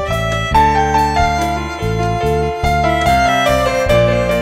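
Live church worship band playing a slow song: keyboard and violin over acoustic guitar, bass and drums, with a melody stepping up and down over sustained bass notes and steady drum strikes.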